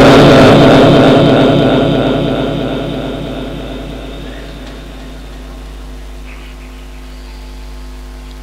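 A Quran reciter's last phrase, amplified through a loudspeaker system, dies away in a long echo over the first four or five seconds, leaving a steady low hum from the sound system.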